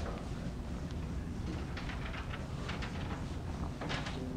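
Whiteboard eraser rubbing across a whiteboard in a run of short strokes, mostly in the second half and strongest near the end, over a steady low room hum.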